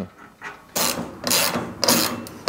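Socket ratchet wrench clicking in about three quick strokes, starting under a second in, as it runs nylock nuts down onto the bolts of a sheet-metal bracket.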